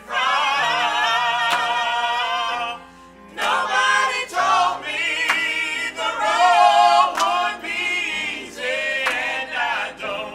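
A mixed vocal group of four women and two men singing together in harmony, holding long chords, with a short break about three seconds in before the voices come back in.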